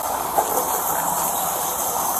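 Steady hiss of water being poured or sprayed onto a fire, with steam boiling off the hot embers as it is put out.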